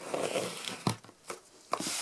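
Packing tape on a cardboard box being slit open with a knife: a short scratchy tearing rasp, then a couple of light clicks and handling of the cardboard.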